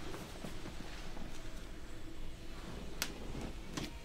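Hands gripping and working a bare foot and ankle during a chiropractic extremity adjustment, with two short sharp clicks close together about three seconds in.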